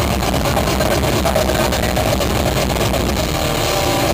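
Live metalcore band playing at full volume, heard through an overloaded camera microphone. Drums and distorted guitars blur into a dense, muddy wall of noise.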